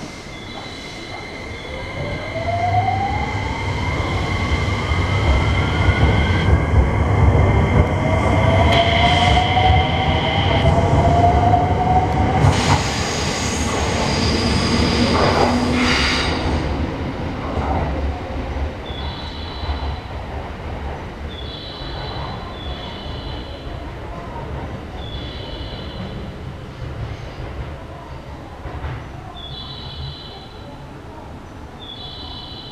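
An electric train pulls away from the platform, its motor whine rising in pitch as it accelerates over a rolling rumble. About halfway through there is a loud burst of noise, after which the train fades off.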